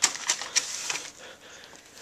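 A paper card being handled and opened on a desk: a few sharp crackles and taps in the first second, then softer rustling.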